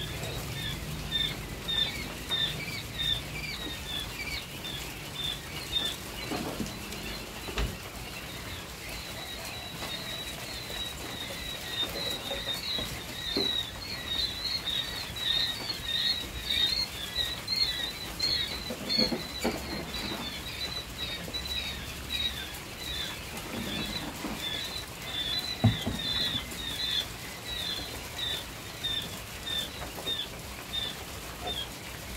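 Many day-old quail chicks peeping without a break, rapid short high chirps overlapping one another. A few knocks sound over them, the sharpest near the end.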